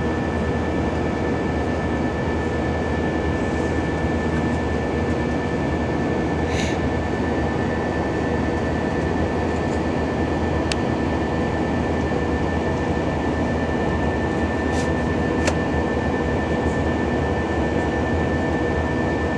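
Steady cabin noise of an Airbus A319 climbing after takeoff: jet engine drone and rushing airflow with a few steady whining tones, unchanging in level. A few faint brief clicks are heard, about a third of the way in and again near the end.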